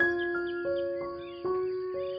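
Slow, gentle piano music, a note struck about every half second and left to ring, with birds chirping softly behind it.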